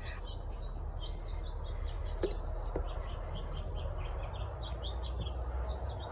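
Small birds chirping repeatedly in the background, short high chirps two or three times a second, over a low steady rumble. A couple of faint clicks come a little past two seconds in.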